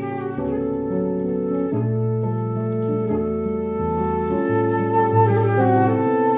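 Concert flute playing a melody over chords and a moving bass line on a Yamaha synthesizer keyboard, a samba-jazz instrumental duo.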